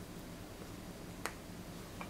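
A table knife set down, one sharp click about a second in, over a faint steady hum.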